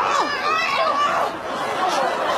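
A group of women's voices shouting and chattering excitedly all at once, with a falling cry near the start.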